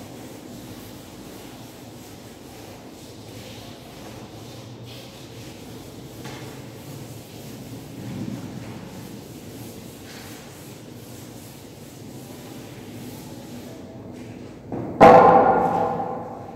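A board duster rubbing across a chalkboard, wiping off chalk writing, in quiet, uneven scrubbing strokes. Near the end a much louder sound starts, likely a woman's voice.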